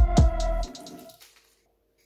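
Electronic dance music with heavy bass and sharp drum hits, which stops about two-thirds of a second in and trails off into near silence.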